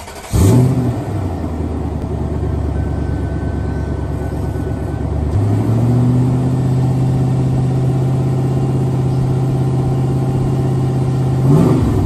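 A 1999 Toyota Land Cruiser's 4.7-litre V8 starts about half a second in and settles into a steady idle. About five seconds in the engine speed steps up and holds steady, with a brief rise in revs near the end.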